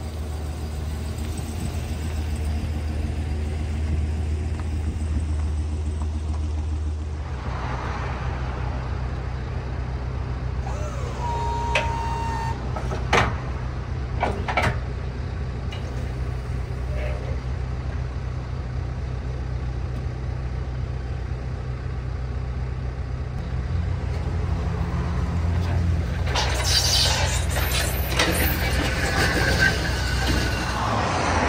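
A pickup truck's engine running steadily with a low hum, its tone shifting about seven seconds in. A few sharp metallic clicks and knocks come midway, and louder rattling, scraping noise comes near the end as the firewood bags come off the trailer.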